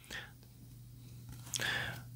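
Soft rustling and light scraping of trading cards in plastic sleeves as they are set down on a pile and picked up, faint and brief, with a slightly longer rustle near the end.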